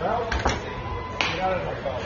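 A sharp smack about half a second in as the pitched ball arrives at the plate, then a second sharp knock a little after a second in, over people chattering.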